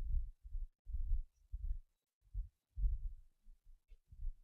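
Faint, irregular low thuds, roughly two a second with short silent gaps, picked up by a clip-on lapel microphone.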